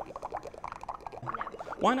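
Hydrogen gas from a hose bubbling into a bowl of soapy water: a quick, irregular run of small gurgles as the foam builds up.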